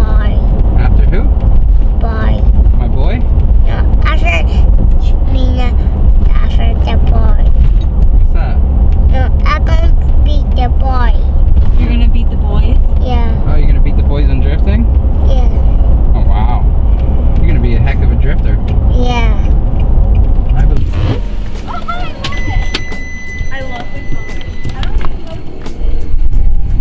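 Low road and engine rumble inside a moving SUV's cabin, under music with singing from the car stereo. About 21 seconds in the rumble drops away as the car stops, and a steady electronic chime sounds for about two seconds.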